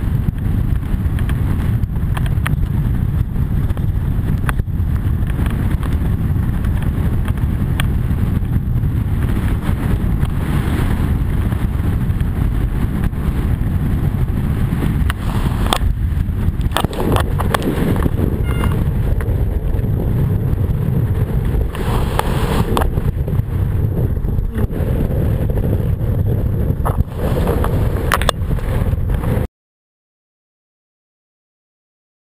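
Wind buffeting the microphone of a camera on a kiteboarder moving at speed, a loud low rumble with scattered slaps and splashes of water against the board. It cuts off suddenly near the end.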